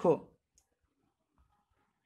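The tail of a spoken word, then near silence with two faint clicks, about half a second and a second and a half in.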